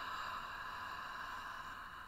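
A woman breathing out slowly through her mouth, a long breathy "haah" with no voice in it, demonstrating the exhale of a relaxation breath.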